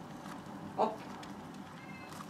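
Speech only: a single short exclamation, "Op!", just under a second in, over a faint steady background hum.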